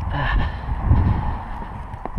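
Low rumbling wind and movement noise on a head-mounted camera's microphone, with a man's heavy breath about a quarter-second in as he walks, still out of breath.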